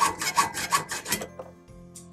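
Hand hacksaw cutting through a metal tube held in a vise, in quick rasping back-and-forth strokes, about five a second, that stop a little past a second in.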